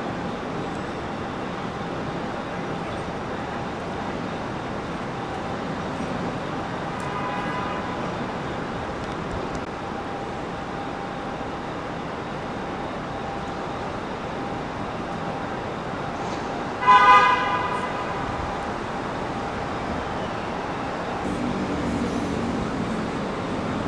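City street traffic noise, steady, with a car horn honking once loudly for about half a second late on and a fainter horn a few seconds in.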